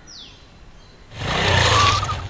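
KTM RC sport motorcycle riding up close, its engine getting loud about a second in and staying loud.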